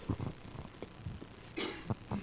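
A man's short, faint cough about one and a half seconds in, with a few light clicks before it.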